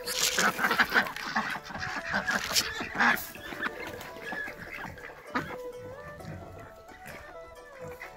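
Ducks quacking and chickens calling among the flock for the first few seconds, then background music with held notes that step from pitch to pitch takes over from about four seconds in.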